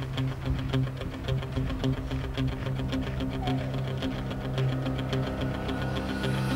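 Background music with a steady beat over sustained low notes.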